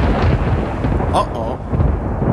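A loud low rumble under a dense hiss, easing off slowly, with a short gliding voice-like sound about a second in.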